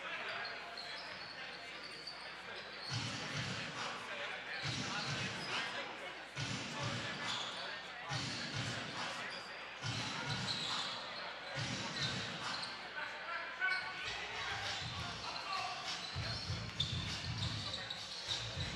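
A basketball dribbled on a hardwood gym floor during live play, with indistinct voices of players and spectators echoing in the gym.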